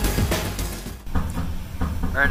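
Background music fading out over the first second, then an engine idling with a steady rapid knock, about six or seven beats a second.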